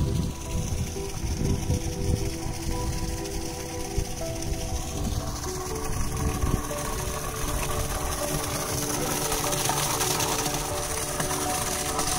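Background music of long held notes that shift every few seconds, over an uneven low rumble, with a hiss growing over the second half.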